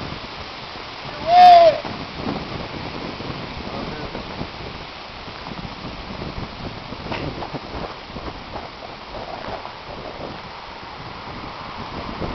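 Steady rushing of wind on the microphone, with one short, loud whooping call in a person's voice about a second and a half in.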